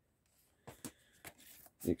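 A few faint clicks and a brief scrape of Blu-ray cases being handled as a steelbook case is picked up, then a man's voice begins near the end.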